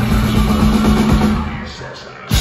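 Live rock band playing loud, with drum kit, bass and guitars, then dropping out about a second and a half in, the sound dying away into a brief break.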